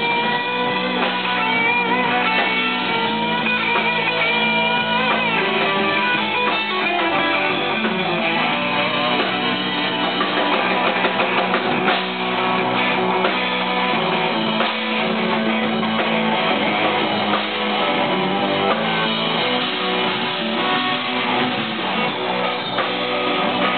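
Live blues-rock band playing an instrumental stretch: electric guitars to the fore over bass and drums, with notes bending in pitch in the first few seconds.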